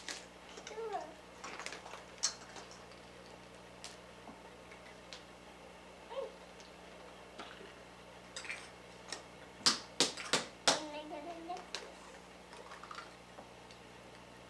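Hollow plastic Easter eggs being handled and pulled open, a scattering of small plastic clicks and taps, loudest as four sharp clicks close together about two thirds of the way through. A child makes a few brief vocal sounds in between.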